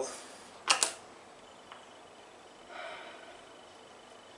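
Two quick sharp clicks, close together, as multimeter test-probe tips are set onto a lithium iron phosphate cell's terminals. The meter then settles on the cell voltage. A faint tick and a brief faint sound follow.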